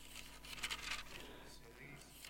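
Faint rustle and soft crackle of thin Bible pages being turned, a few light crackles over quiet room tone.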